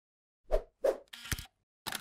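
Animated-intro sound effects: two quick pops, then a short swish with a low thump, then another pop near the end.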